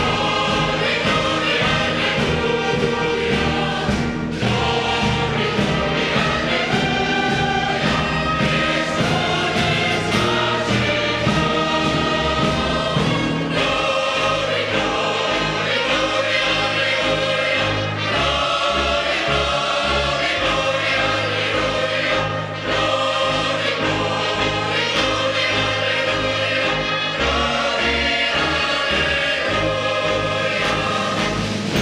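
A choir of men's and women's voices singing together with a fanfare band's brass and percussion accompanying them.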